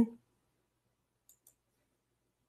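Two faint computer mouse clicks in quick succession, about a second and a half in, against near silence.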